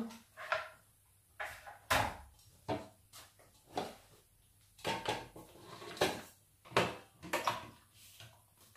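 Kitchen things handled on a counter: a metal tube cake pan set down, items moved on a wooden cutting board, and the blender jug taken off its base near the end. The result is a series of separate knocks and clatters, about one a second.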